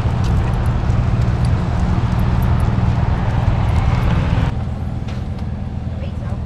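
Steady low hum of an idling vehicle engine under outdoor background noise, which drops abruptly to a quieter background about four and a half seconds in.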